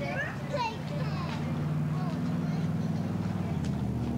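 Children's voices chattering and calling out in the first second or so, over a steady low hum that grows stronger a little over a second in.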